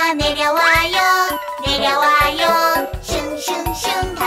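Children's song music with singing, and a sliding pitch that swoops up and then down about a second in.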